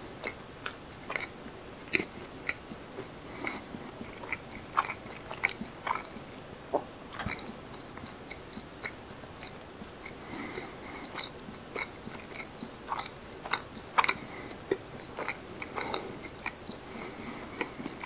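Close-miked chewing of soft, sticky fermented rice cake with red bean paste filling (janggijitteok): irregular wet mouth clicks and smacks, some sharper than others.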